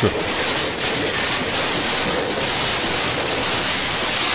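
A steady rushing, hissing noise with no distinct crashes or knocks in it.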